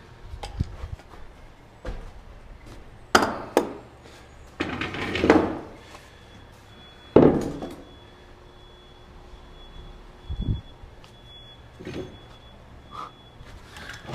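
Framing lumber being handled and set into place on a wooden stair: irregular wooden knocks, thunks and scraping, with the sharpest, loudest knocks about three and seven seconds in.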